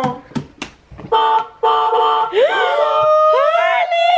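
Electronic sound effects from a child's battery-powered ride-on toy car's speaker: a steady electronic tone starting about a second in, then a synthesized engine-rev sound that rises in pitch twice and holds.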